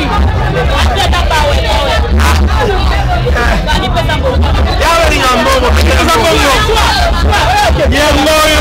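Loud crowd hubbub: many voices talking at once, none clear, over a steady low rumble.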